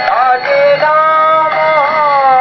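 Devotional kirtan singing: a voice holds long notes that bend and slide between pitches, over musical accompaniment.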